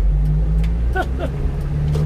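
A 1-ton truck's engine running under load as the truck pulls away from a standstill and picks up speed, with a steady low hum.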